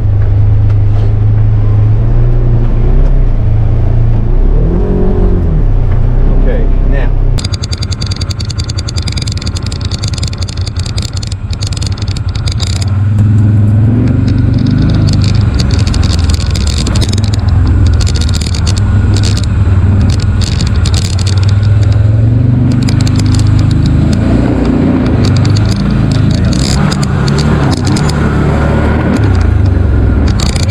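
Polaris Ranger XP 1000 UTV's twin-cylinder engine running under load while crawling through tall brush, its pitch rising and falling. From about seven seconds in, a dense crackling of weeds and branches brushing along the vehicle.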